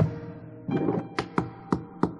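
Tap shoes striking a wooden stage floor, a handful of sharp taps in an uneven rhythm, over held piano notes, with a piano chord coming in a little under a second in.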